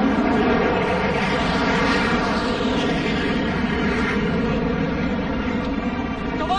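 Aircraft engine running with a steady drone, fairly loud and holding an even pitch.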